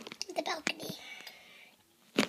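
A child's soft, whispered speech, trailing off to near quiet toward the end.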